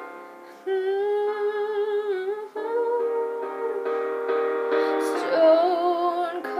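A woman singing a held, wavering wordless vocal line over sustained piano chords; the voice comes in about a second in.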